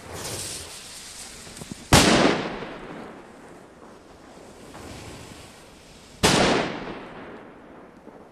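Two New Year's firecrackers (Böller) going off about four seconds apart, each a sharp, loud bang with a rumbling tail that dies away over about a second. A brief, fainter hiss comes at the very start.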